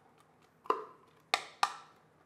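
A spatula knocks against a stainless-steel mixer bowl while scraping whipped egg whites out of it. There are three short knocks: the first a little under a second in, the last two close together.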